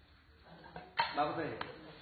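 A metal serving spoon clinks against a large cooking pot while jollof rice is scooped out, once sharply about a second in and again more lightly just after.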